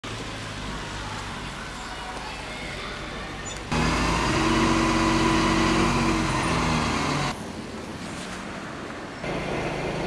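Parked emergency vehicles' diesel engines running at idle, with road noise, in several short shots cut together. The loudest stretch, from about four to seven seconds in, is a steady engine hum that matches the aerial ladder fire truck in the picture.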